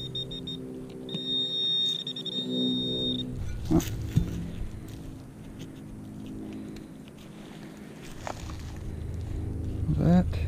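Handheld metal-detecting pinpointer sounding a steady high-pitched alert tone for about two seconds, the sign that its tip is right over a metal target in the soil. A few short clicks follow, over a low steady hum.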